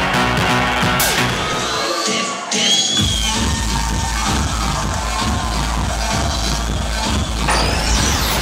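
Loud electronic house music from a club DJ set with a steady bass beat; the bass cuts out about two seconds in and comes back in at the drop a second later. A whoosh rises near the end.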